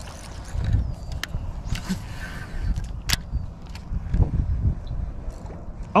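Wind rumbling in gusts on the microphone over open water, with a few sharp clicks from the fishing tackle or boat.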